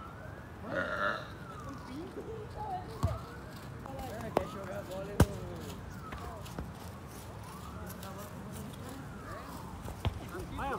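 A siren wailing, its pitch slowly rising and falling over and over, under scattered voices. Three sharp thuds of a football being kicked come about three, four and five seconds in, the last the loudest.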